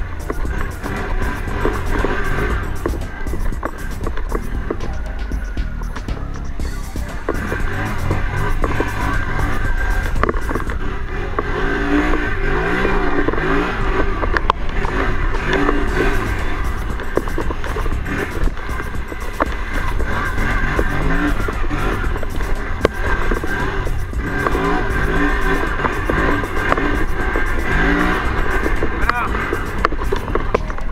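Quad (ATV) engine running steadily as the quad is ridden along a muddy course, mixed with music playing over it.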